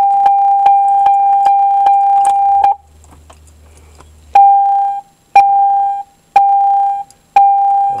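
2002 Pontiac Grand Am's door-open warning chime: a steady electronic tone held for nearly three seconds, then after a pause beeping about once a second.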